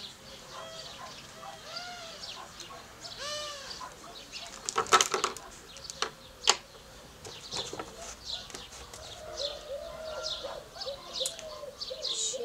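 Outdoor birds calling: repeated arching calls in the first few seconds, then many short high chirps. A burst of loud sharp clicks comes about five seconds in, with one more click a second and a half later.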